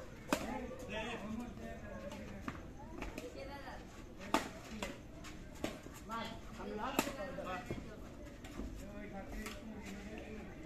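Badminton rackets striking a shuttlecock during a rally: several sharp strikes, irregularly spaced.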